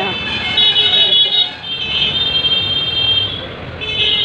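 Busy road traffic of motorcycles and auto-rickshaws, with high-pitched horns sounding in long blasts of about a second each, three times.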